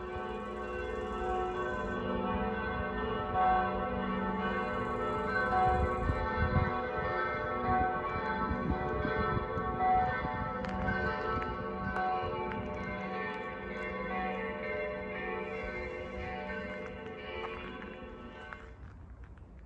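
Church bells pealing, several bells sounding together, with strikes about once a second over their overlapping hum.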